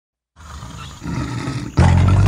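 A lion's roar, a low rumbling sound that builds about a second in. Just before the end, the song's backing music starts suddenly and loudly.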